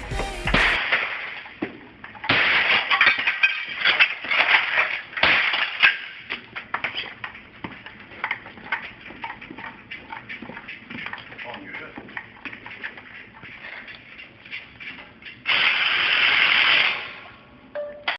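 Pop music cuts off suddenly just after the start. A run of bangs, crashes and clattering knocks follows as hard objects are thrown and smashed, loudest in the first few seconds and thinning to scattered clatter. A steady loud rush of noise lasts about a second and a half near the end.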